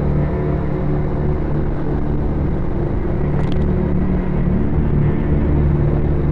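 Onboard sound of a motorcycle cruising, its engine running steadily under a low wind rumble, with a brief higher sound about three and a half seconds in.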